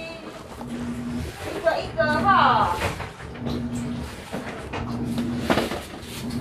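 Refrigerator being shifted by hand on the floor: low rumbling with a few knocks, the sharpest near the end. A short falling call from a voice about two seconds in.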